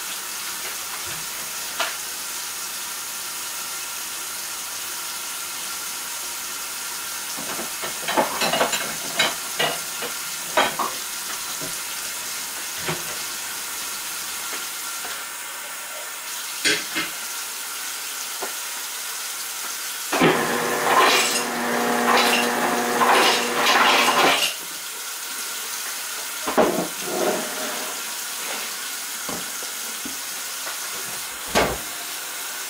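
Steady hiss of a pot of water heating on the stove, broken by scattered clinks and knocks of kitchen utensils and, about two-thirds of the way in, a few seconds of louder clattering with a ringing tone.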